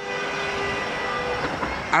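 Train horn sounding a chord of several steady notes over a steady rumble, the notes cutting off about one and a half seconds in.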